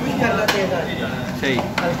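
A long metal ladle knocking and scraping against a large metal cooking pot as meat is stirred, with sharp clanks about half a second in and twice near the end.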